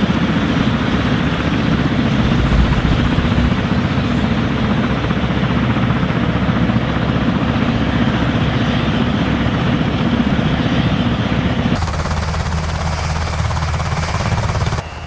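Helicopter rotor noise: a loud, steady, rapid chopping. About twelve seconds in it turns thinner and lower.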